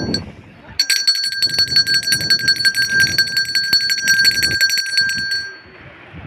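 A small metal bell rung rapidly and continuously, a fast ringing trill that starts just under a second in and stops about a second before the end.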